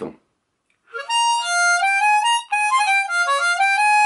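Diatonic harmonica playing a short melodic phrase of held, stepping notes, starting about a second in. The harp has its 7-hole draw reed lowered a semitone, so the phrase sounds a minor third, the blue note, in the second octave.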